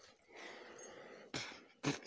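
A person's faint breath, then two short, sharp vocal bursts near the end.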